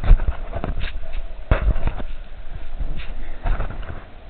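Sea water sloshing and splashing close to the microphone inside a rock cave, with irregular slaps and knocks, the loudest just after the start and about a second and a half in, over a low rumble of surging water.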